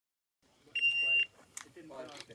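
Electronic shot timer's start beep: one steady high-pitched tone about half a second long, the signal for the shooter to begin the stage. Faint voices and a small click follow it.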